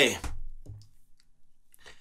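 A man's shouted "hey" trailing off, then a soft low thump and a few faint clicks before it goes quiet.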